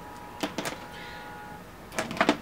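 Makeup tools being handled: two or three small clicks about half a second in, like a brush or palette being set down and picked up, over a faint steady hum.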